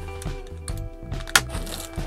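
Background music with steady held notes, over which a utility knife slits open a cardboard mailer, with one sharp crack a little past halfway.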